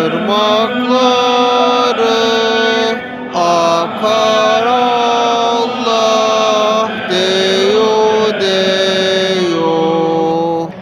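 Chanted Turkish ilahi (Islamic devotional hymn): a voice holds long, sliding notes in phrases over a steady low drone, pausing briefly between phrases.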